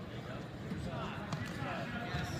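Arena ambience of distant voices shouting and talking, with a few dull thuds from wrestlers' feet on the mat.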